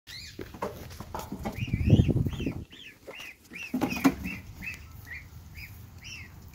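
Goslings peeping: a run of high, arched little peeps, two or three a second. A loud low rumble on the microphone comes about two seconds in.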